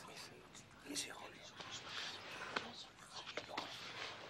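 Faint whispered voices.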